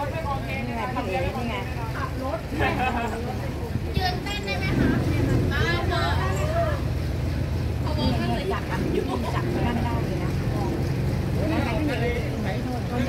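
Boat engine running at a steady low drone, with people's voices talking over it.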